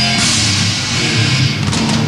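Heavy metal band playing live and loud: electric guitars over bass and drums.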